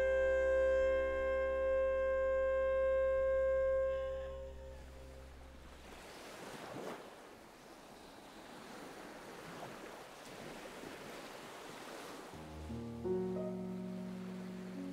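A long held musical chord fades away in the first few seconds, leaving the quieter, even wash of surf running up a sandy beach; new music with a low bass note comes in near the end.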